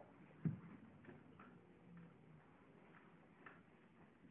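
Near silence with a single dull thump about half a second in, followed by a few faint light taps.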